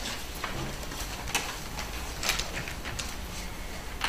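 Paper ballot slips rustling and being handled, with scattered light clicks and knocks.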